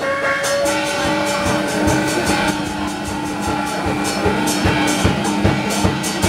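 Taiwanese opera (gezaixi) accompaniment music: held melody notes over a regular drum beat that fills in from about a second and a half in.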